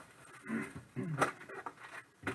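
Hands handling and unwrapping trading-card box packaging: a few short rustles and crinkles of paper and plastic wrap.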